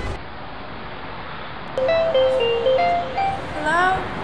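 Street traffic noise, then about two seconds in a phone ringtone starts, a jingle of short stepped electronic notes. Near the end a woman's voice rises, answering the phone.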